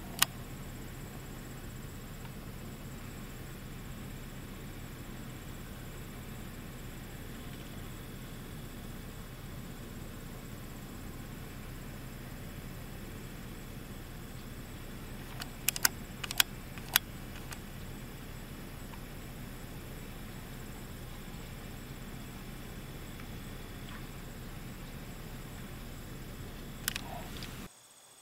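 Steady low hum of an idling vehicle, with a few sharp clicks of camera handling: one at the start, a quick cluster about midway and one near the end.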